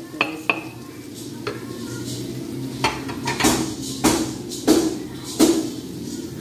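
Spatula clanking and scraping against an aluminium karahi as onions, potatoes and spices are stirred and fried in oil, with a light sizzle underneath. The clanks come about every two-thirds of a second through the second half.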